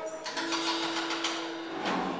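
A single steady instrument note held for about a second, with light taps and clicks around it, from a band on stage.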